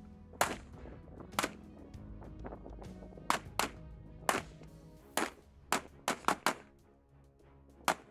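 Rifle shots, about ten single sharp cracks spaced unevenly, with a quick run of four a little past the middle, over background music.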